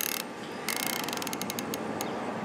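Tangent Theta 5-25 riflescope's elevation turret being dialed: a short burst of clicks at the start, then a rapid run of separate detent clicks lasting about a second.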